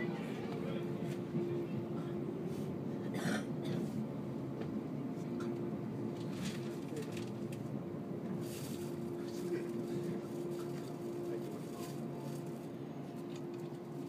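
Cabin noise of a JR 185-series electric train pulling slowly alongside a station platform as it comes in to stop. A steady running rumble carries a steady hum that fades away near the end, with a few light knocks and clicks from the car.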